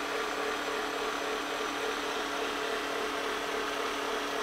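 Gear-driven forced-rotation dual-action paint polisher running steadily at a raised speed, its foam pad held still against a glass panel: an even motor hum with a few steady tones.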